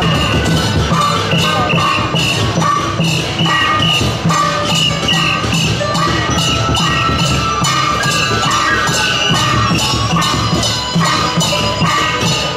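Festive procession music for a dance troupe: a steady, quick beat of drums and cymbals with a melody line over it.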